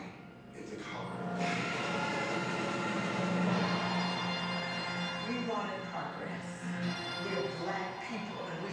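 Documentary trailer soundtrack played over a room's loudspeakers: music with voices speaking over it. The music swells in about a second and a half in and holds to the end.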